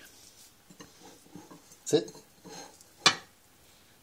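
Kitchenware knocking: one sharp clack about three seconds in, with soft clinks and handling noises before it.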